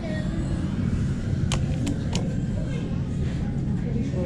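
Lift lobby ambience: a steady low rumble with faint background voices. Three sharp clicks come in quick succession about a second and a half in.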